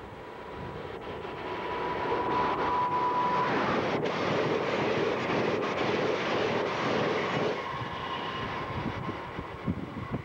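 Amtrak passenger train rushing past at speed. The noise swells over the first two seconds, holds for about five seconds while the stainless-steel coaches go by, then falls off sharply. A steady high-pitched tone sounds through the first three seconds, and wind buffets the microphone near the end.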